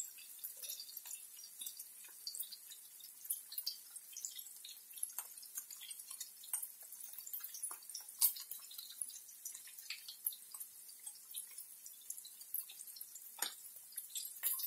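Faint, irregular pops and crackles from a pot of boiling water and a pan of salo cubes frying beside it, with a few louder plops as grey potato dumplings are dropped into the water.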